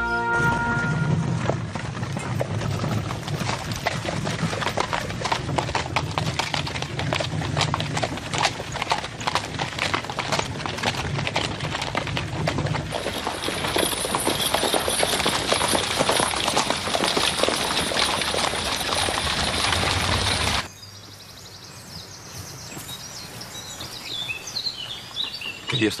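Horse-drawn carriage on the move: hooves clip-clopping with the rattle of the carriage in a dense run of knocks. About twenty seconds in it cuts off abruptly to a much quieter outdoor background with a few short chirps.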